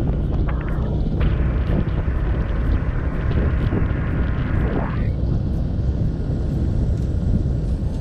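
Steady low rumble of a moving motorbike ridden along a paved road, its engine mixed with wind buffeting the microphone. A higher hum rides on top from about a second in until about five seconds in.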